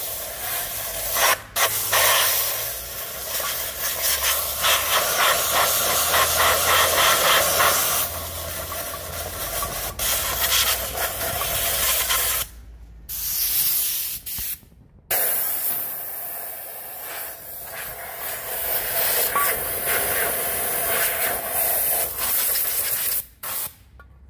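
A loud hissing jet from a hand-held nozzle aimed into an aluminium intake manifold to clear caked carbon and oil sludge. It cuts out briefly four times, then starts again.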